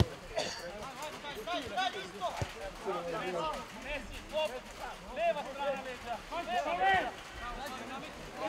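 Several voices shouting and calling out across a football pitch during play, overlapping each other. A sharp thud of a ball being kicked comes right at the start.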